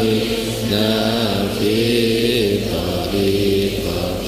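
Voices chanting an Arabic devotional prayer in slow, drawn-out sung notes that rise and fall in pitch, one held note after another.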